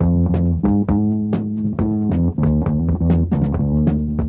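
Live instrumental funk-rock band: an electric bass line comes in loud at the start, under electric guitar and a steady drum beat.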